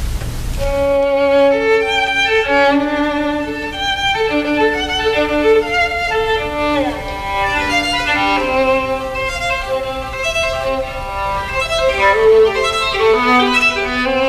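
A violin playing a classical melody. It comes in under a second in, out of a brief hiss, and slides downward in pitch about halfway through.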